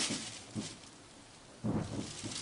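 Plastic bag crinkling and rustling as a cat plays with it, with a few soft thumps; it goes quieter in the middle and picks up again with a thump near the end.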